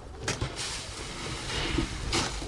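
Soil being tipped out of a plastic bucket into a large woven bulk bag: a knock, then a steady rushing hiss for about a second and a half as it pours out.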